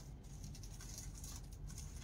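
Quiet room tone: a low steady hum with faint, scattered soft rustles and ticks.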